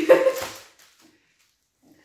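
A short, high, pitched yelp lasting about half a second, rising in pitch, then cutting to silence.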